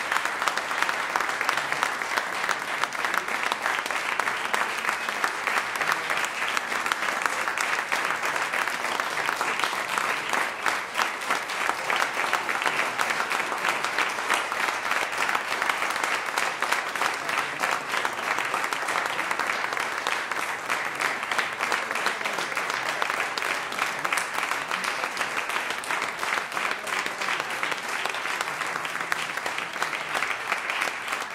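Audience applauding with dense, steady clapping.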